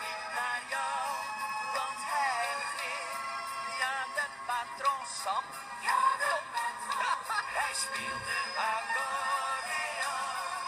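A Flemish schlager song carrying on: a male voice singing a wavering melody over held instrumental notes. The sound is thin, with almost no bass.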